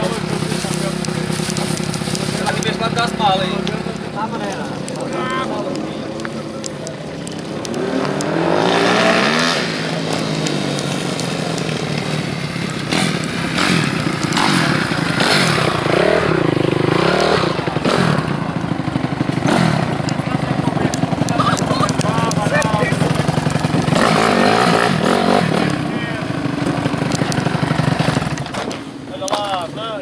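Off-road motorcycle engines running in a paddock, holding a steady note with a few rises in pitch, mixed with people talking.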